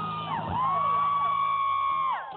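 Live rock band ending a song: a high note slides up, is held for about a second and a half, then drops away over a low steady hum, with whoops from the audience.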